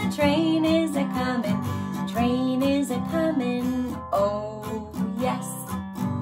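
Acoustic guitar strummed in a steady rhythm, with a woman singing a melody over it.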